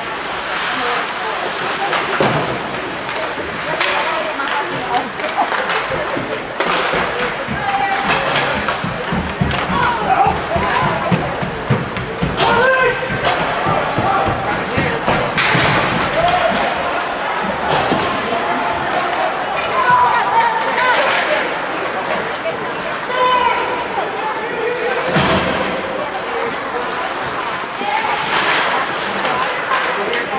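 Sounds of an ice hockey game in a rink: repeated sharp knocks and slams from sticks, puck and boards over a steady din of the hall, with voices shouting at intervals.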